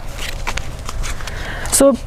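Foil freeze-dried food pouches crinkling and rustling as they are handled and picked up.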